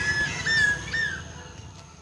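A bird calling: three short whistled notes about half a second apart, the last one falling in pitch.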